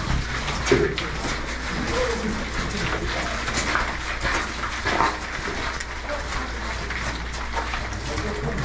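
Shuffling footsteps and clothing rustle of a small group walking bent over through a low coal-mine tunnel, with scattered irregular clicks, faint murmured voices and a steady low hum.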